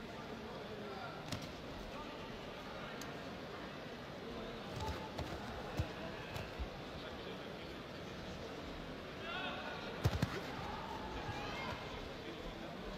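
Boxing-ring sounds over arena crowd noise: scattered sharp thuds from the boxers' gloves and footwork, the loudest a quick cluster of two or three about ten seconds in, with shouted voices from around the ring now and then.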